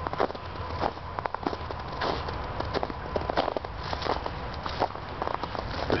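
Footsteps through thin snow over dry fallen leaves, with many irregular crackles and crunches.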